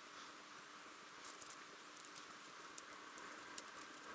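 Faint, scattered small clicks and handling noise from fingers and a thin tool working a metal aviation connector on a cable, the loudest few clicks about a second and a half in, over a low steady hiss.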